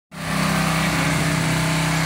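Engine running at a steady speed, a constant unchanging hum.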